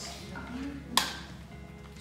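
A single sharp click about a second in, as a wheel snaps into the socket on the Graco Blossom high chair's rear leg, over soft background music.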